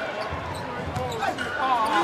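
Arena crowd noise during live basketball play, with a few sharp taps of a basketball bouncing on the hardwood court.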